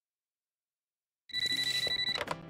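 Silence, then a little past halfway a telephone starts ringing, a high steady ring, with music starting under it.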